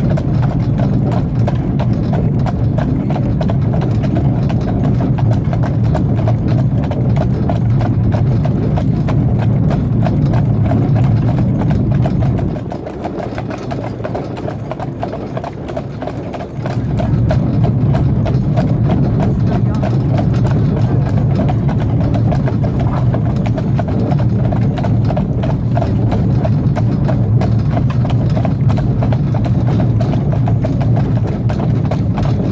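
Hooves of a pair of harnessed horses clip-clopping steadily on a tarmac road as they pull a cart, over a steady low rumble that drops away for about four seconds midway.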